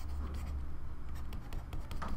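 Stylus writing on a tablet: a quick run of light scratches and ticks as a word is written and underlined with short dashes.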